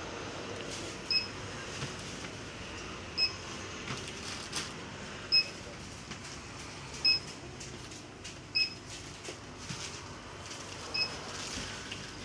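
Checkout barcode scanner beeping six times, a short single-pitched beep every one and a half to two and a half seconds as items are scanned, with plastic carrier bags rustling faintly between the beeps.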